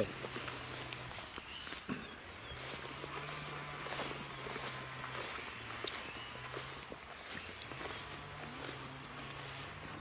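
Summer meadow ambience: a steady high chirring of insects, with faint rustling of tall grass as someone walks through it.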